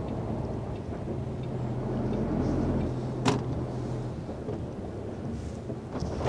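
MAN TGX truck's diesel engine running steadily as it drives, heard from inside the cab; the hum swells slightly in the middle and eases off after about four seconds. One sharp click about three seconds in.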